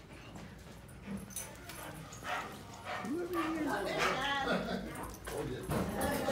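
A dog whining: one whine that rises, holds and falls about three seconds in, then higher whining a second later.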